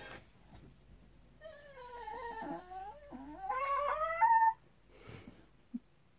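A dog whining and yowling for about three seconds, its pitch wavering up and down and loudest just before it stops suddenly.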